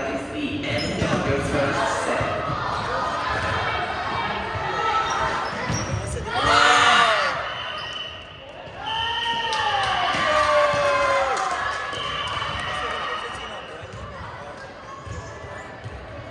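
Indoor volleyball rally in an echoing sports hall: the ball thudding off players' arms and hands, with players shouting to each other, loudest in a burst of yelling about six and a half seconds in and again a little later.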